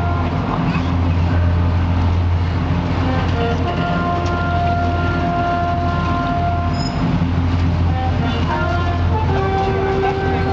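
Amphibious duck tour vehicle's engine running with a steady low drone as it moves through the water, with music playing over it in sustained notes that change every few seconds.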